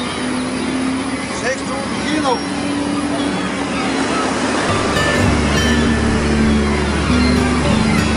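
Fishing trawler's engine running in a steady drone, with gulls calling over the catch. From about halfway a deeper low layer comes in as music starts.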